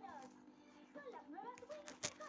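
Faint background voices over a low steady hum, with a short sharp click just before the end.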